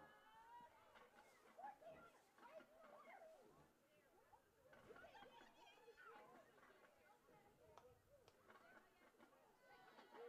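Faint, indistinct voices of people talking at a distance.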